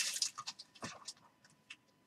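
Trading cards and a clear plastic card holder being handled, giving a few soft, scattered ticks and rustles.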